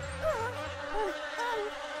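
A steady insect-like buzzing drone, with short whistly tones gliding up and down over it.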